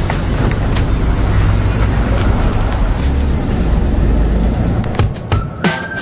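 A city bus running close by, a steady low rumble with road noise, under background music.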